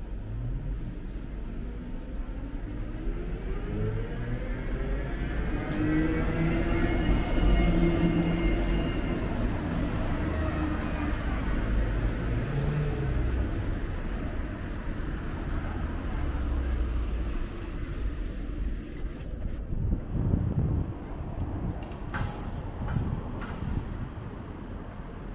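A city bus driving past along with street traffic, its motor's whine rising in pitch as it approaches and falling away as it passes, with a car following close behind.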